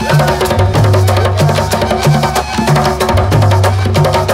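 Colombian gaita ensemble playing cumbia: a gaita flute melody over shaken maraca and hand-beaten tambora and llamador drums, which keep a steady repeating low pattern.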